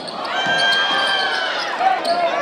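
Live high school basketball game in a gym: the ball bouncing on the hardwood court amid crowd voices, with a held high-pitched squeal lasting about a second in the middle.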